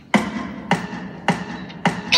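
Four evenly spaced sharp percussive clicks with short ringing tails, just over half a second apart: a count-in to the song.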